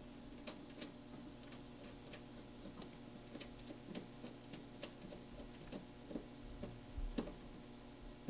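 Faint, irregular small metallic clicks as a nut is turned by hand onto a threaded terminal stud of a starter solenoid, with one louder click near the end.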